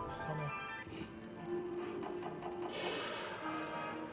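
Merkur 'Knight's Life' slot machine playing its electronic free-game and win jingles while credits are tallied. A quick rising run of notes opens it, and a brighter shimmering chime comes about three seconds in.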